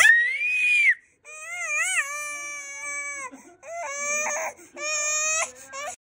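One-year-old baby crying: a shrill squeal in the first second, then three drawn-out wails with short breaks between them, the first wavering up and down in pitch.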